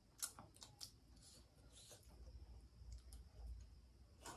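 Faint eating sounds: a scatter of soft clicks and mouth smacks from people eating noodles, the sharpest click a moment after the start.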